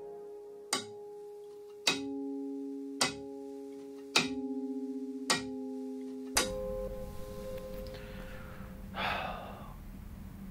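Slow, sparse music of single ringing instrument notes, one about every second, each sustaining into the next; it stops about six seconds in. Then quiet room tone with a faint soft noise near the end.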